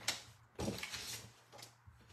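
Faint swish of a sliding paper trimmer's blade carriage running along its rail, cutting a strip of patterned paper.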